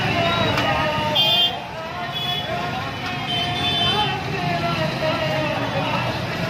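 Many motorcycles running at walking pace together, their engines mixing into a steady low drone. Short high horn beeps sound about a second in, again after two seconds and near the middle, over a crowd's voices.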